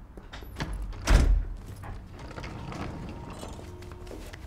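Front door shutting with a heavy thud about a second in, followed by a few light clicks and knocks.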